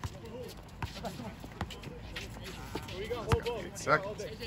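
A basketball bouncing on a hard outdoor court, a few separate hits with the loudest about three seconds in, under faint shouts from players.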